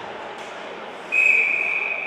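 A loud, steady, high whistle tone starts suddenly about a second in and holds, slowly fading, over faint ice-rink background noise.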